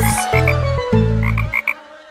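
Cartoon frog croaks, two quick runs of short ribbits, over the last low notes of a children's song's backing music, which fade away near the end.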